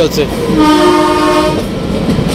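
The Kalka–Shimla toy train's horn sounds one steady blast of about a second, over the noise of the moving train.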